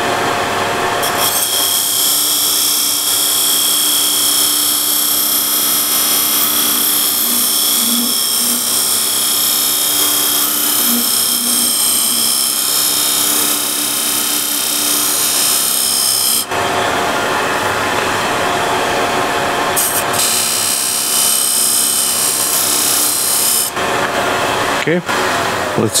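Homemade beading tool, a high-speed-steel bar with ground slots, cutting beads into a spinning wooden box on a running lathe: a loud, steady scrape over the lathe's hum. The cut changes about two-thirds of the way through and stops a couple of seconds before the end, leaving the lathe running on its own.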